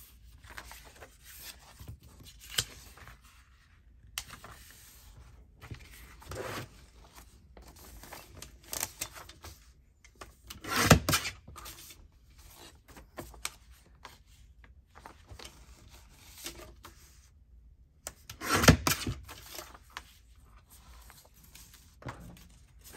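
Sheets of paper rustling and sliding as they are folded and handled on a cutting mat, with two louder sweeps about a second long, near the middle and near the end, as the sliding blade of a paper trimmer cuts through the paper.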